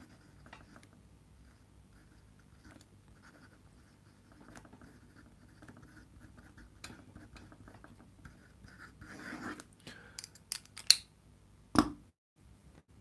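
Pen scratching on notebook paper while writing a note, faint and on and off. A few sharp knocks come near the end, the loudest just before it stops.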